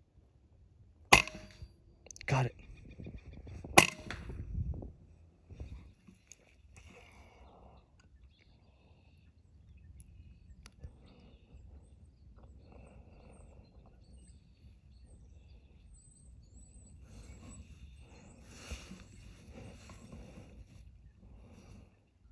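Two sharp shots from a moderated .22 PCP air rifle, about two and a half seconds apart, with a lighter click between them, then faint handling noise.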